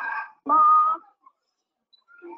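Polar bear cub calling in its attempt at a roar, heard as played back from a video: a short pitched call about half a second in, the loudest sound here, following the tail of an earlier call.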